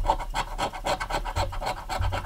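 A coin scratching the coating off a scratch-off lottery ticket on a wooden table: quick back-and-forth rasping strokes, several a second, with a dull thump about one and a half seconds in.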